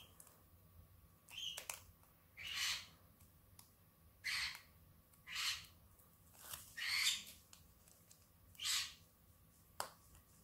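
Double-sided tape being peeled off its roll or backing strip: about six short rasping rips, each under half a second, coming roughly a second apart.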